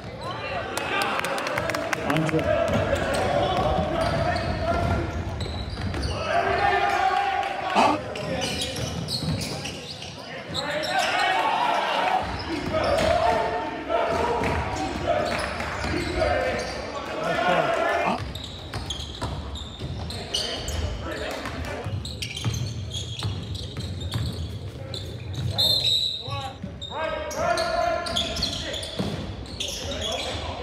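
Live basketball game sound in a gymnasium: the ball bouncing on the hardwood court amid players' and spectators' voices, echoing in the hall, with a sharp knock about eight seconds in.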